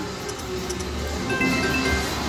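Video slot machine playing its electronic music while the reels spin. In the second half a few short, steady chime tones sound as a small win lands.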